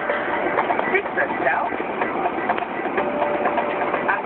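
Steady engine and road noise inside a Porsche Cayenne Turbo's cabin at about 146 km/h, with indistinct voices over it.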